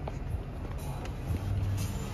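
Low, steady rumble of a car at a standstill, with a few faint clicks.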